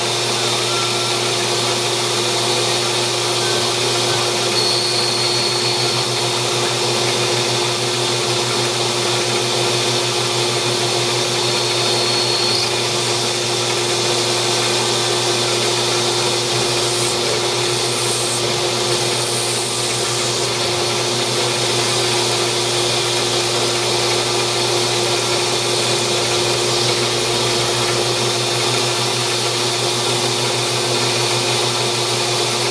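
Grizzly G0602 CNC-converted metal lathe running, turning a titanium bar with a TiN-coated insert while chips curl off the part. A steady machine hum with one constant tone and a hiss throughout.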